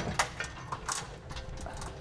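Small metallic clinks of steel bolts and toothed washers tapping against a steel trailer-hitch bracket as they are set into the frame's weld nuts by hand. There are a few sharp clinks, and the loudest comes just under a second in.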